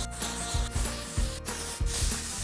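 Aerosol can of Oribe Dry Texturizing Spray hissing in bursts with brief breaks as it is sprayed onto hair. Background music with a steady beat runs underneath.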